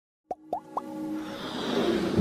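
Logo-intro sound effects: three quick pops, each gliding upward in pitch and a little higher than the one before, followed by a swelling whoosh that grows steadily louder.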